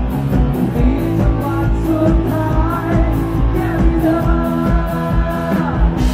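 Live rock band playing: a male voice singing over electric guitar and drums, with a steady beat and regular cymbal strokes.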